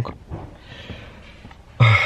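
A quiet pause with a faint hiss, then near the end a man's short breathy grunt just before he starts talking.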